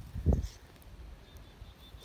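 A brief low thump on the microphone about a quarter second in, then quiet outdoor ambience with a faint, high, repeated chirp.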